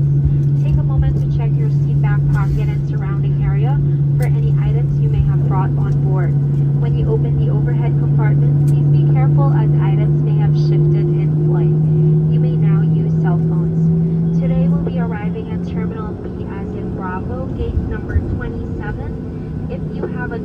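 Jet airliner engines heard inside the cabin while the aircraft slows and taxis after landing: a steady low drone that rises slightly in pitch during the second half, with voices in the cabin over it.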